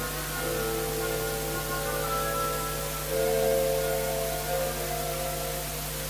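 Orchestra playing slow, sustained chords that shift about half a second in and again about three seconds in, with a steady hiss and low hum from the recording underneath.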